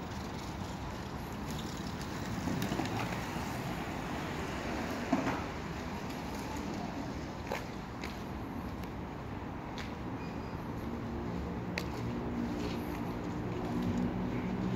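Skateboard rolling on asphalt amid steady street noise. There are a few sharp clacks, the loudest about five seconds in, and a low steady hum comes in during the last few seconds.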